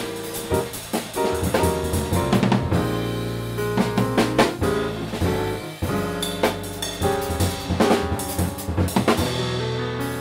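Live jazz piano trio playing: grand piano, electric bass guitar and drum kit. Busy drumming with frequent snare, bass drum and cymbal hits runs under the piano and bass lines.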